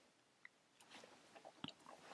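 Near silence, with a few faint ticks of a white gel pen's tip dabbing snow dots onto a paper card.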